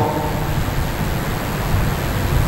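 Steady rushing background noise, heaviest in the low end, with no voice in it.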